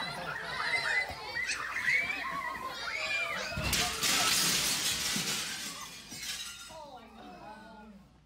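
Young children shrieking and calling out, then, about three and a half seconds in, a sudden loud crash that fades away over about two seconds.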